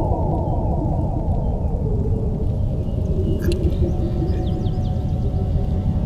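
Designed film sound effect for a surge of supernatural power: a deep steady rumble under a swirl of repeated falling tones. The falling tones fade out over the first two and a half seconds, leaving the rumble and a faint held tone. A single click comes about three and a half seconds in.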